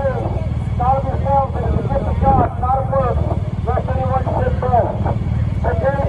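Motorcade vehicles driving past with a steady low engine and road noise, under people talking nearby.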